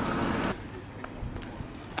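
Mercedes-Benz eCitaro electric city bus rolling past close by: tyre noise on asphalt with a thin steady whine. It cuts off abruptly about half a second in, leaving quieter street sound with a few light clicks.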